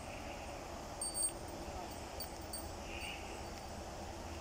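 Steady outdoor background noise with a low rumble, and a brief sharp click about a second in.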